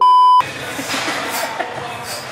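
Test-tone bleep of a colour-bars card used as an editing effect: one steady, loud, high beep lasting under half a second that cuts off suddenly. Gym room noise follows.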